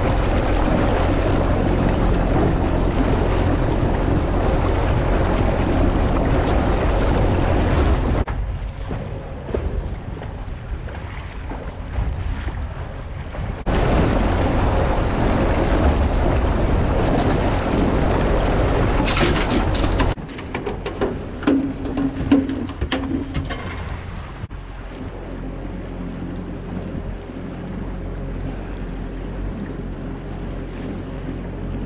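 Outboard motor running with the boat under way, under heavy wind noise on the microphone and water rushing past the hull. The loudness drops off sharply and comes back several times, and there are a few knocks on the aluminium boat about two-thirds of the way through.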